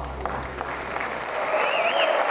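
Concert audience applauding as the song ends, the clapping growing louder, while a low bass note dies away. Near the end a wavering whistle rises above the clapping.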